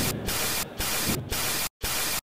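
Loud static hiss from a digital glitch sound effect, breaking up several times with short dips and one brief complete dropout near the end.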